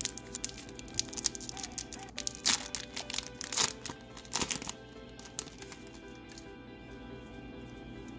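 Foil trading-card booster pack being torn open, the wrapper crinkling and crackling in a quick run of sharp sounds over the first five seconds, then going quiet. Background music plays throughout.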